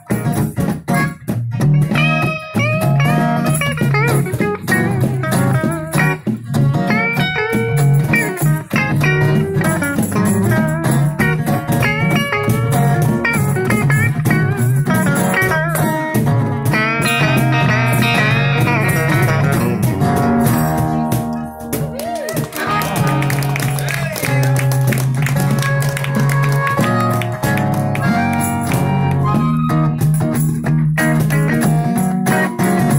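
Live amplified blues instrumental: an electric guitar plays a lead line full of bent, gliding notes over a strummed acoustic guitar and a steady low bass line.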